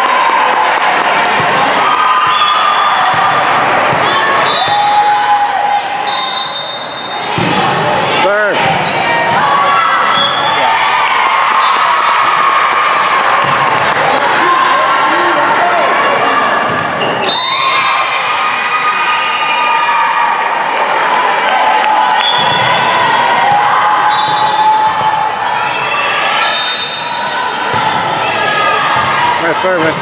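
Sounds of a girls' volleyball rally in a large gym: many high voices calling and cheering, sneakers squeaking on the court, and a few sharp ball hits, the loudest of them about eight seconds and seventeen seconds in.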